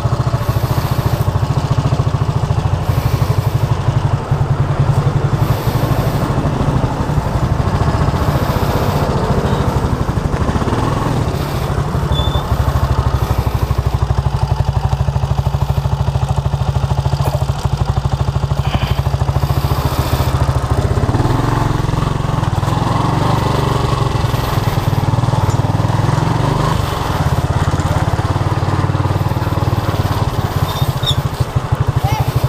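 Small motorcycle engine running at low speed, its exhaust pulsing steadily. It idles for a stretch in the middle, then pulls away again, its note changing about two-thirds of the way through.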